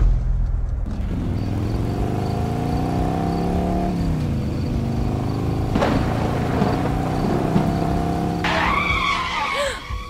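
Car engine running with its pitch sliding down and up, and wavy high tyre-squeal tones near the end, from a film soundtrack.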